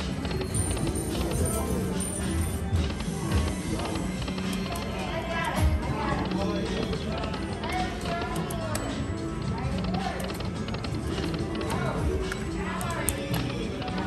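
Casino slot-floor din: electronic slot-machine music and jingles over a steady murmur of background voices while slot reels spin.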